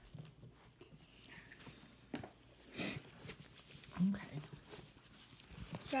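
Quiet, scattered rustles and light taps of hardback Bibles being picked up and handled, with a short murmured voice sound about four seconds in.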